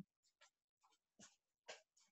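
Near silence, broken by three faint, very short sounds.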